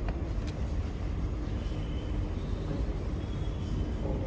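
Steady low rumble of background noise in a large hall, with a faint steady hum and a couple of faint clicks near the start.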